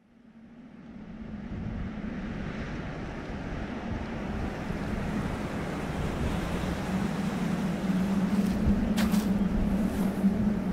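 A steady rushing ambient noise that swells in from silence over the first two seconds and then holds, with a low steady hum underneath and a couple of brief crackles near the end. It is a non-musical ambience section inside the album track, after the song's music has stopped.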